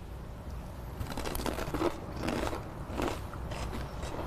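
Corn chips loaded with cheese dip being bitten and chewed: a rapid, irregular run of crisp crunches.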